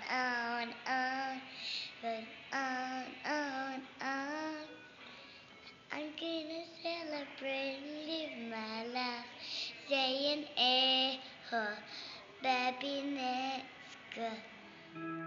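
A young girl singing a song alone, without accompaniment, in a string of short phrases and held notes.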